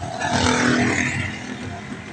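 Engine and road noise heard inside the cab of a moving small truck, a steady low rumble. A louder, rushing noise swells just after the start and fades by about a second and a half in.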